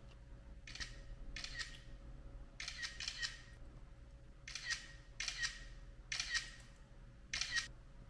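Smartphone camera shutter sound, played about eight times at uneven intervals as selfies are taken.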